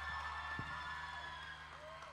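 Faint audience cheering and applause as a live band's song ends, over a steady low note that is held on and slowly fades.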